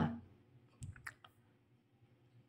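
A few short, faint clicks about a second in, against quiet room tone.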